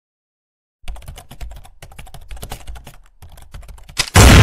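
Rapid, irregular clicking like typing on a computer keyboard, starting about a second in, with short pauses twice: a typing sound effect leading into the intro.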